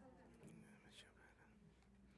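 Near silence: room tone with a faint steady hum and a couple of soft ticks.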